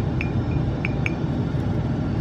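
A few light glassy clinks as a paintbrush dabs dots of paint onto a glass bottle, bunched in the first second or so, over a steady background hum.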